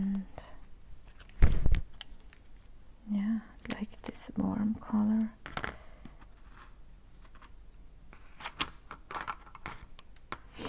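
Wooden colored pencils being handled and set down, with light clicks as they knock together, thickest near the end. A single hard thump about a second and a half in is the loudest sound. Three short hummed notes from a voice come between about three and five seconds in.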